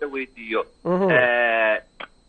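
A caller's voice over a phone line: a few short syllables, then one long drawn-out vowel held for about a second, falling in pitch at its start.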